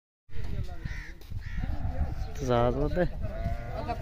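A sheep bleats once, a wavering call about two and a half seconds in, over a low rumble and men's voices.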